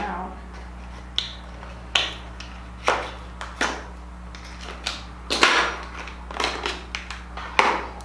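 Makeup packaging handled close to the microphone: a series of irregular sharp clicks and taps with brief rustles as a concealer tube is opened and worked.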